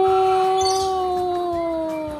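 A single long, drawn-out howl-like vocal call, held at one pitch and sagging slightly toward the end.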